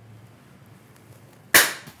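A single sharp bang about one and a half seconds in, loud and sudden, dying away over a fraction of a second; before it only a faint low hum.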